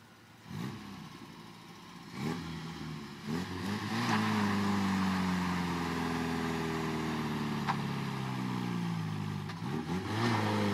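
Mitsubishi Sigma's 2.6-litre Astron four-cylinder engine blipped a few times, then held at high revs from about four seconds in, its pitch sagging slowly as it labours under load, and revved up again at the very end. It is trying to do a burnout, which the owner says the old 2.6 can't manage.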